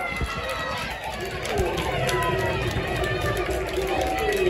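Small crowd of spectators shouting and calling out, several voices overlapping, in reaction to a goal just scored.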